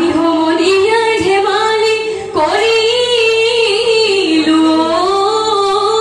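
Women singing a Jeng Bihu song through a PA, the melody carried in long, gently wavering held notes with a short breath break about two seconds in.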